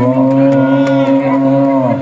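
A male Quran reciter (qori) holding one long melodic note in tilawah recitation, amplified over a PA system; the note ends about two seconds in.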